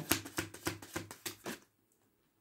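A deck of tarot cards being shuffled in the hands: a quick run of soft card taps, about six a second, that stops about three-quarters of the way through.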